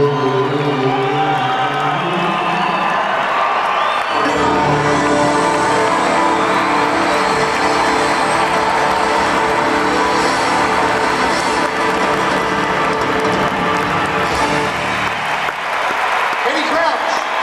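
Live band of acoustic guitars with a string section finishing a song: moving notes for the first few seconds, then a held final chord from about four seconds in while an arena crowd applauds and cheers.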